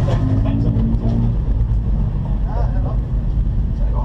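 VW Corrado VR6 race car's six-cylinder engine idling steadily, heard from inside the cabin, with a voice talking briefly about two and a half seconds in.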